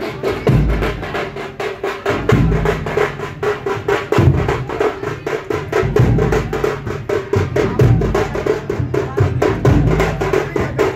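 Dhol and tasha drums playing together: a fast, continuous stream of sharp tasha strokes over heavy low dhol beats that land every one to two seconds.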